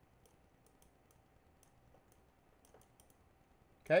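Faint, scattered light clicks from a computer input device as a drawing tool writes on screen, over a faint steady hum and quiet room tone.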